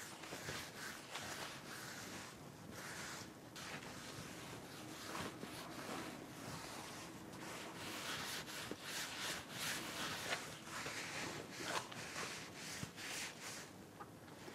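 A paintbrush being worked across a large stretched canvas: irregular rubbing strokes of the bristles on the canvas, coming thicker from about halfway through.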